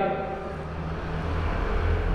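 Low background rumble in a pause between spoken sentences, growing a little louder near the end.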